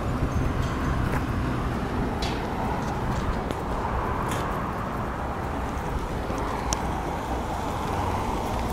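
Honda CR-V creeping forward at walking pace with its engine running: a steady low rumble with a few faint sharp ticks.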